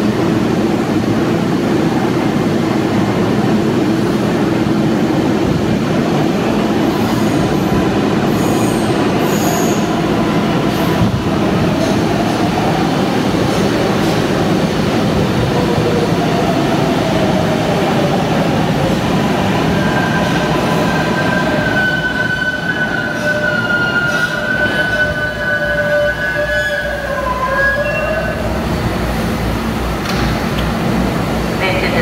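A New York City Subway R188 train pulling into an underground station: a loud, steady rumble of wheels on rail as the cars run past. About two-thirds of the way through it quiets, and several high whining tones come in. They waver and drop in pitch near the end as the train slows to a stop.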